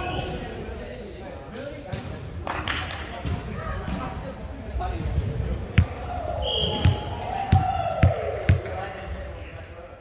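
Volleyball play in a large hall: a string of sharp hits of the ball, echoing, the loudest a little before six seconds and several more in the second half, with short falling squeals and players' voices.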